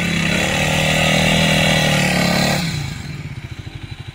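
Motorcycle engine revved and held at high revs for about two and a half seconds, then dropping back to a pulsing idle.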